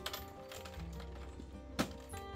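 Background music with steady sustained tones. A scooter's lifted seat is shut with one sharp knock just before the end.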